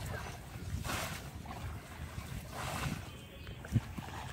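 Water swishing and sloshing around legs wading through floodwater, in a few swells, over a steady low rumble of wind on the microphone. A short thump comes near the end.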